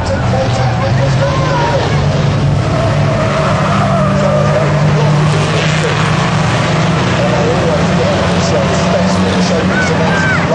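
Engines of several racing vans running hard together, their pitch wavering up and down as they rev and lift off through the bends.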